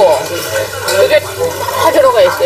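Indistinct voices talking at a table, with a couple of clinks of utensils against a metal serving bowl.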